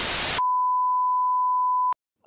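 A burst of television static hiss, then a steady single-pitch beep: the broadcast test tone that goes with colour bars, held for about a second and a half and cut off abruptly with a click.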